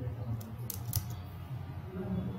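Three light, quick clicks at a computer in the first second, over a low steady hum.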